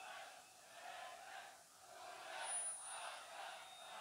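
Faint hubbub of a large crowd in a hall, with no music playing.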